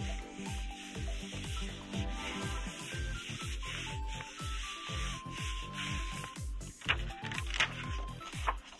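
Background music with a steady low beat, over hands rubbing the back of a sheet of paper pressed onto an inked rubber printing block. Near the end come a few short rustles as the paper is peeled off the block.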